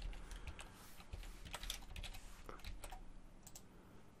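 Faint computer keyboard typing: scattered key clicks at irregular intervals.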